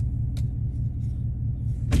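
Chevrolet Silverado's 6.2-litre V8 running with a steady low rumble, heard from inside the cab. One faint click partway through.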